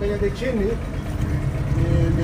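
A small 15-horsepower outboard motor running steadily with a low rumble, with a man's voice heard briefly over it.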